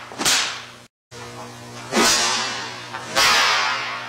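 Three sharp whipping cracks of a left hand slapping against the body while the other hand strikes with a stick. They come near the start, about two seconds in and about three seconds in, each tailing off in a hiss.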